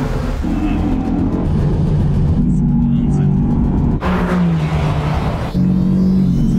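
Mercedes-AMG GT's twin-turbo V8 running at speed on a hot lap, with music laid underneath.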